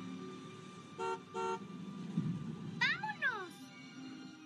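A car horn honks twice in quick succession, then a voice calls out once in a sliding, falling pitch, over soft background music.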